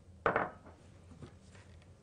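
Kitchenware handled on a wooden worktop: one sharp clatter about a quarter second in, then a few faint light knocks.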